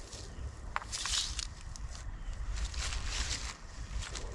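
Wind rumbling on the microphone, with a few small clicks and short rustles from hands handling muzzleloading gear, about a second in and again near three seconds.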